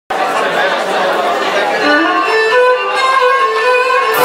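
Cretan lyra playing a melody of held, stepping notes, with audience chatter underneath.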